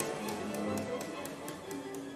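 Sampled orchestra holding sustained chords while a light tapping beats about four times a second, the whole sound slowly fading away. The chord shifts near the end.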